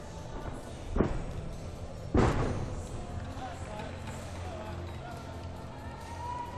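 Two thuds of a gymnast's feet landing on the sprung floor-exercise mat, about a second in and again a second later, the second the louder, ringing out in a large hall over steady arena murmur.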